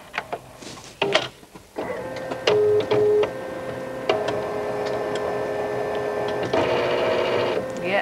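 Photocopier making a copy: two short beeps about two and a half seconds in, then the machine runs with a steady humming whir that shifts at about four seconds and again at six and a half seconds, and stops just before the end.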